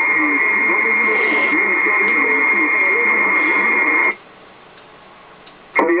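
Kenwood TS-950SDX HF transceiver receiving a transmission: an unintelligible voice under a steady high whistle. About four seconds in, the signal cuts off to faint receiver hiss. Near the end a click brings in the next station's voice.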